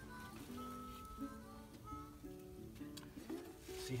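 Background music: a light melody on plucked strings.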